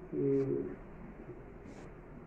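A man's brief hesitation sound, a held low 'eee' lasting about half a second, followed by a pause of quiet room tone with a faint short hiss near the end.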